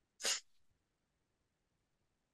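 A single short, sharp breath noise from a person, a quick sniff or stifled sneeze, a fraction of a second in.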